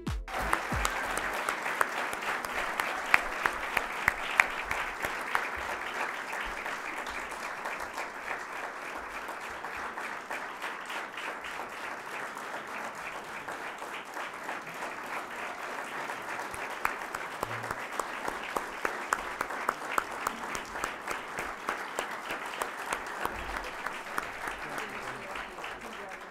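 Sustained applause from a large banquet audience, many people clapping together for about 26 seconds before fading out near the end.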